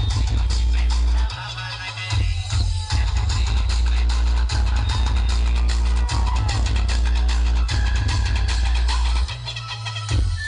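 Electronic dance music played very loud through a large outdoor DJ sound system, dominated by heavy bass. The bass drops out briefly a little over a second in and again near the end before the beat returns.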